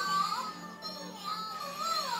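Electronic toy robot cat playing a synthesized tune: one thin, warbling melody line that glides up and down, over a steady low hum.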